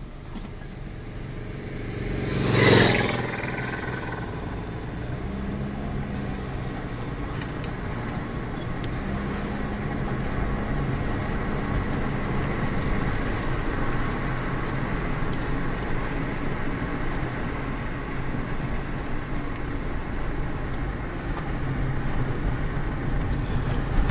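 Road and engine noise of a car driving, heard from inside the cabin, growing a little louder over the first several seconds. About two and a half seconds in there is one short, loud burst of noise.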